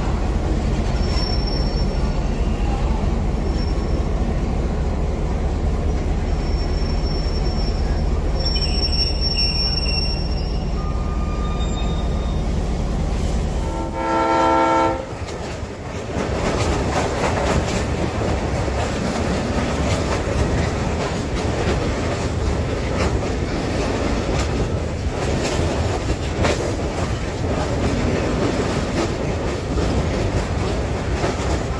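A passenger train hauled by a G8 diesel locomotive: first a steady low diesel drone with faint high squeals as the coaches roll into the station, then a single horn blast of about a second about halfway through. After that comes the rhythmic clatter of wheels over the rails and the rush of air at an open coach window as the train runs at speed.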